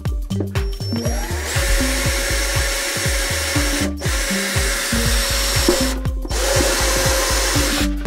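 Cordless drill with a stepped bit boring through the plastic neck of a water carboy: the motor whine rises about a second in, then it cuts steadily, stopping briefly twice. Electronic background music with a steady beat plays throughout.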